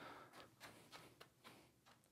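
Near silence with a few faint, soft taps of juggling balls landing in the hands.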